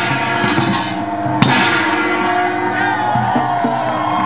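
Korean pungmul percussion troupe playing barrel drums and ringing metal gongs, with one sharp loud strike about a second and a half in. The metallic ringing carries on afterwards while crowd voices come in.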